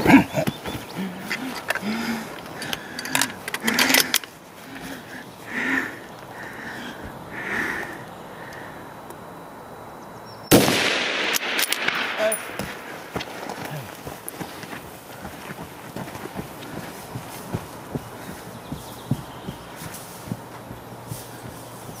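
A single scoped precision-rifle shot about ten seconds in, followed by a rolling echo that dies away over a couple of seconds.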